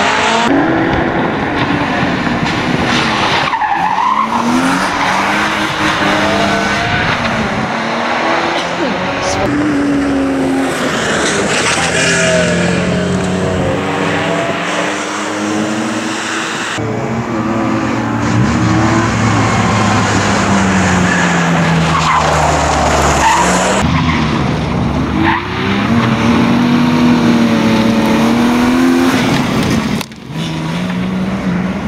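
BMW E46 Compact rally car's engine revving hard, the pitch climbing and dropping again and again through gear changes and lifts as it threads a chicane. Tyres squeal and skid on the tarmac.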